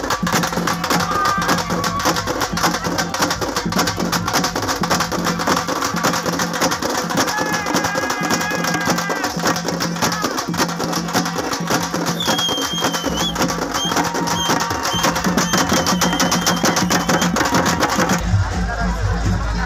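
Loud, fast, steady drumming with band music for a dancing street procession. A few high held tones come through in the second half.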